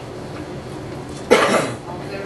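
A single loud cough close to the microphone about a second and a half in, over a steady low room hum.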